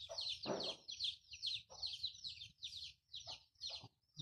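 Birds chirping: a quick, steady string of short high chirps, several a second, with a few fainter lower calls among them.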